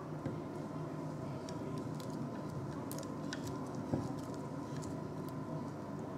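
Faint clicks and taps of a glass burette being fitted into a wooden clamp stand, with one slightly louder knock about four seconds in, over a steady low room hum.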